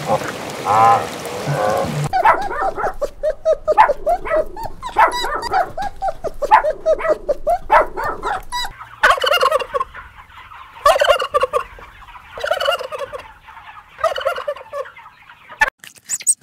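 Animal calls: a fast run of short, pitched calls for several seconds, then four separate calls of about a second each, spaced a second or two apart.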